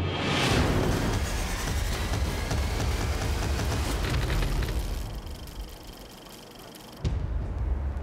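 Documentary sound design under music: a sweeping whoosh that swells into a boom-like rumble and dies away over several seconds, then a low steady drone that cuts in suddenly about seven seconds in.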